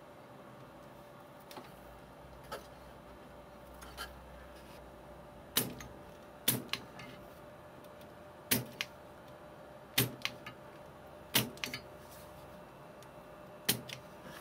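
Spring-loaded desoldering pump (solder sucker) snapping as it is fired to pull solder off the chip's pins. There are six loud sharp clicks spaced about one and a half to two seconds apart, several with a smaller click just after, and a few fainter clicks in the first few seconds.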